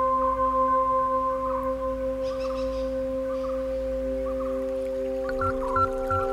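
Binaural-beat sleep music: several steady, pure electronic drone tones held together, with faint warbling notes above them. A new lower tone comes in about halfway through, and a couple of soft low thumps sound near the end.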